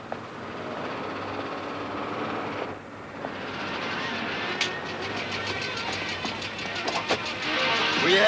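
Road noise of a car driving up and drawing to a stop at the kerb, mixed with music that has a steady beat growing louder in the second half.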